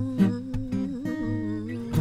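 An acoustic guitar is strummed while a woman hums a wordless melody over it, her voice wavering with vibrato.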